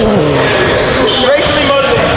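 Basketball bouncing on a gym floor during a pickup game, with players' voices.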